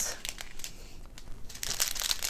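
Small plastic zip-lock bags of diamond painting drills crinkling as they are handled and laid flat on a table, in faint scattered crackles that grow busier near the end.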